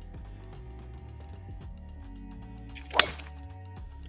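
A driver clubface striking a golf ball off the tee: one sharp crack about three seconds in, over steady background music.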